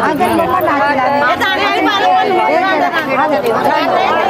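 Several women talking over one another in a group: overlapping chatter, with no single voice clear.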